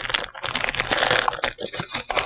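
Foil wrapper of a Pokémon TCG booster pack crinkling as it is pulled open by hand, followed by a few light clicks near the end.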